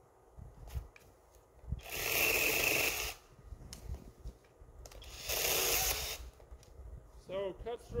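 Brushless battery-powered 6-inch mini chainsaw running in two bursts of about a second each, about two and five seconds in, as it cuts through a tree branch.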